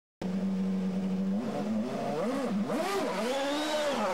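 An engine-like buzzing tone that starts suddenly, holds a steady pitch for about a second, then swoops up and down in pitch several times, like a motor being revved.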